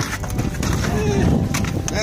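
Wind buffeting the microphone over a low rumble in an aluminum jon boat, with a few light knocks against the hull as a paddlefish is hauled aboard.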